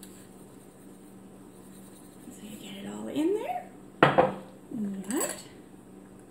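A single sharp click about four seconds in, as the lid of a storage container of dry cereal mix is pulled open. Short wordless rising vocal sounds from a woman come just before and just after it.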